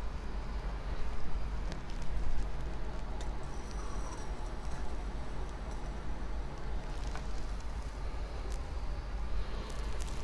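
Cat food can alcohol stove burning under a steel pot of water: a steady flame hiss, with a couple of light knocks about one and two seconds in.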